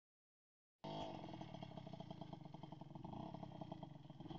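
Suzuki TS-X two-stroke dirt bike engine idling steadily, with a rapid even pulse, after a brief silence at the start.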